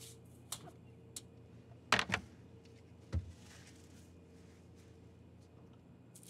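Quiet handling sounds at a refrigerator: a few light clicks, a sharp clack about two seconds in and a dull thump about a second later, as the fridge door is pulled open and a baking tray is moved.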